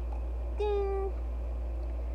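A single short, steady-pitched vocal call, about half a second long, starting about half a second in, over a constant low hum.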